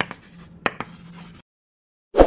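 Chalk scratching on a blackboard as a writing sound effect, with two sharp taps a little over half a second in. It stops after about a second and a half.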